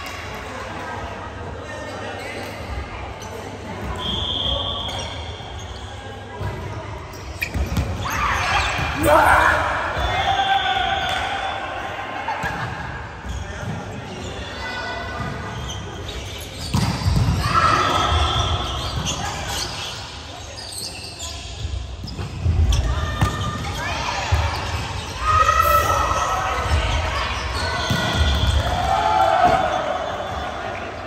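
Volleyball play in a large gym hall: the ball is struck and bounces on the wooden floor again and again. Players' raised voices and calls come in several bursts, ringing in the hall.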